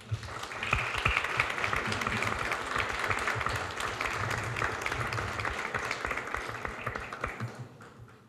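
Audience applauding, building up just after the start, holding steady, and fading out near the end.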